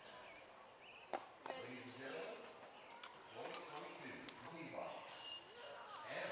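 Faint, distant voices talking quietly, with a couple of sharp clicks about a second in.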